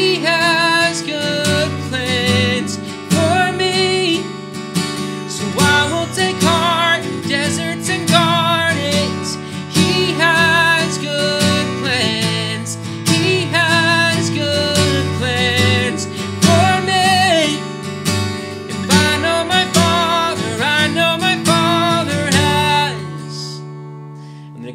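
A man singing a worship chorus while strumming chords on a capoed steel-string acoustic guitar. The strumming and singing stop about a second before the end.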